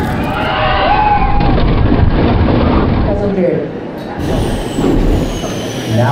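Roller coaster ride sound: a dense rush of wind with riders' voices, including a held shout about a second in, as the floorless dive coaster drops. The rush falls away about three seconds in, leaving quieter voices.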